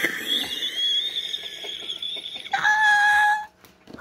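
A woman's high-pitched, breathless wheezing laugh: a long thin squeal, then a lower held tone lasting about a second, cutting off shortly before the end.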